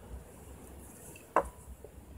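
Chopsticks striking a ceramic plate: one sharp click with a brief ring a little past halfway, then a fainter tick.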